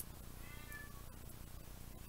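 A faint, short pitched call, about half a second in, over a steady low background.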